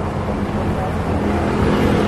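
Street traffic: a motor vehicle's engine running nearby, a steady low rumble with a hum.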